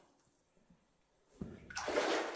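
Water in a flooded mine tunnel splashing and sloshing, starting suddenly about one and a half seconds in after near silence and growing louder toward the end.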